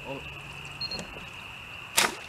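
A bowfishing bow shot: a single sharp crack right at the end as the arrow is loosed toward a fish, the loudest sound here. A steady high whine runs underneath throughout.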